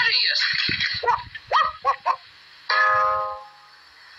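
Old cartoon voice track: a group of voices calls out the answer "P-nuttiest!", then come a few short, high-pitched voice syllables, and finally a short held musical note that fades out near the end.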